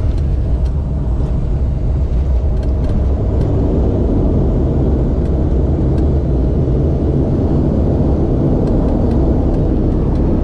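Cabin noise of a turboprop airliner rolling along the runway: a steady deep engine and propeller drone with rumble, growing a little denser and louder about four seconds in.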